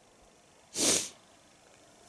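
A man's single sharp breath noise close to the microphone, a short breathy burst of about a third of a second near the middle, with no voice in it.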